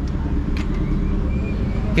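Steady low rumble of a motor vehicle engine running nearby in street traffic.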